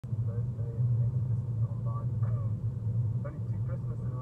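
Steady low rumble of road and tyre noise inside the cabin of a moving BMW i3, with faint talk over it.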